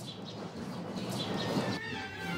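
Outdoor street ambience: a low, even background rumble with several short, high animal calls over it.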